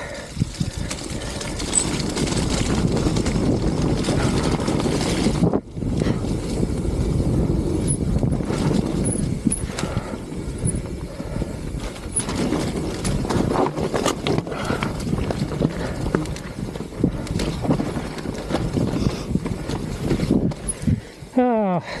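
Mountain bike (Deviate Claymore) riding fast down a muddy, rutted singletrack: steady tyre roar on dirt and wind noise on the camera, with frequent knocks and rattles from the bike over bumps. The noise drops out briefly about five seconds in.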